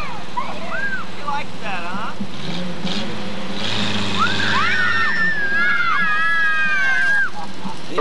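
Children shouting and squealing in high, wordless calls, one held for a second or two near the end, over the low steady sound of a car engine running.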